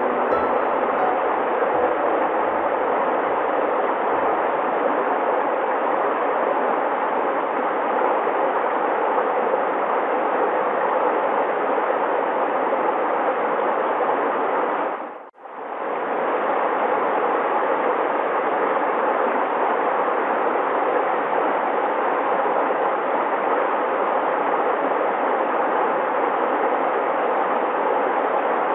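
Shallow stream rushing steadily over rocks, a dense, even wash of water noise. About halfway through it drops out for a moment and comes straight back.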